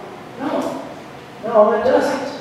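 Speech only: a man talking, in short phrases with pauses between them.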